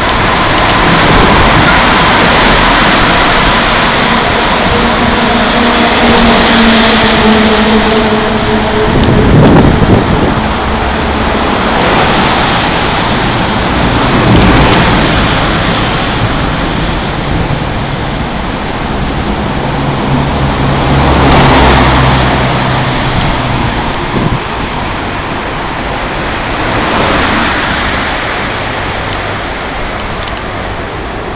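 Road traffic on the bridge's roadway alongside: a continuous rush of cars and trucks that swells each time a vehicle passes, with the low engine hum of heavy vehicles a couple of times.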